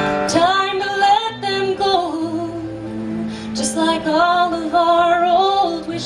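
A woman singing two long, held phrases with a wavering pitch over acoustic guitar accompaniment, with a short gap between them about halfway through.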